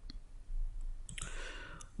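A few computer mouse clicks: one at the start and a couple more about a second and a half in.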